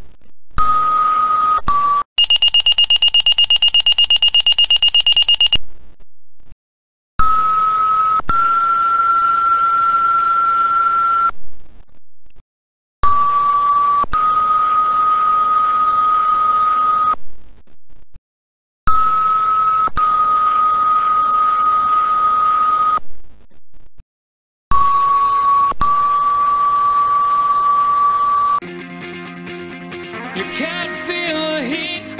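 Fire dispatch radio paging tones: a series of two-tone sequential pages over a radio channel, each a short steady tone of about a second followed by a longer tone of about three seconds at a slightly different pitch, with short silences between the pages. About two seconds in, a higher, rapidly pulsing alert beep sounds for about three seconds.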